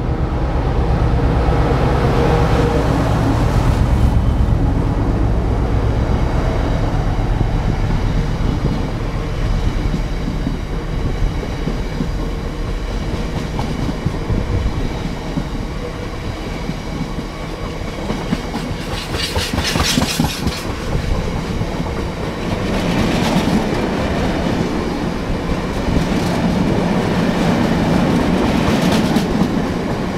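Class 66 diesel locomotive's two-stroke engine running as it passes at the head of a freight train, loudest in the first few seconds. A long rake of bogie tank wagons follows, rolling by with wheels clattering over the rail joints and a brief harsher metallic burst about twenty seconds in.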